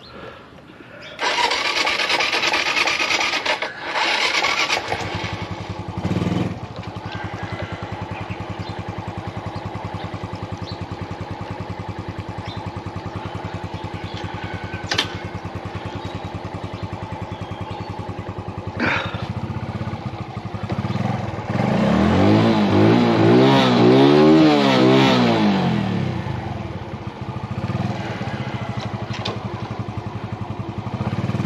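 Motor scooter engine: after a few seconds of loud rushing noise it runs at a steady idle, then a little past twenty seconds in it is revved up and back down a few times, the loudest part, before settling to idle again.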